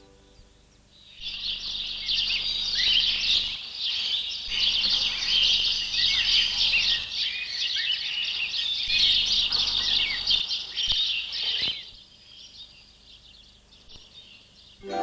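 A dense chorus of many small songbirds chirping, starting about a second in and stopping abruptly about two seconds before the end.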